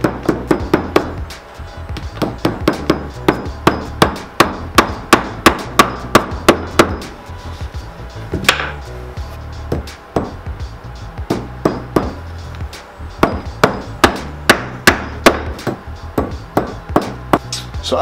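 Small cobbler's hammer tapping nails from inside a loafer through the sole into the heel block. The light, sharp blows come in quick runs of about three a second, with a few short pauses between nails.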